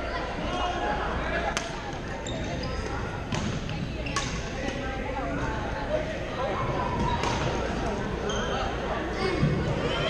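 Badminton play in a large echoing gym: three sharp racket hits on the shuttlecock a few seconds apart, short squeaks of shoes on the court floor, and the steady chatter of many players in the hall.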